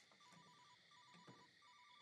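A mobile phone ringing faintly from inside a truck: a ringtone of short beeps alternating between two pitches, in three quick groups, one starting about every three-quarters of a second.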